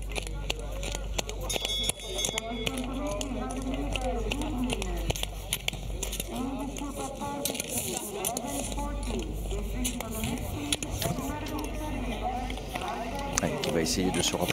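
Voices talking or calling in the background over the rink's steady ambient hum, with scattered sharp clicks.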